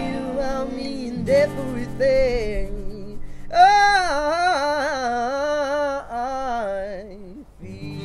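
Unplugged acoustic music: acoustic guitars let notes ring, then from about three and a half seconds in a voice sings a wordless melody with a strong, wavering vibrato. The music thins out and dips near the end.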